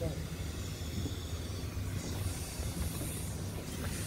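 Steady low rumble with a faint hiss of outdoor ambient noise, with no distinct events.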